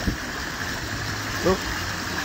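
Steady rush of water along a sailboat's hull as it sails fast in a gust.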